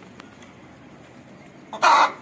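An Aseel chicken gives one short, loud call near the end.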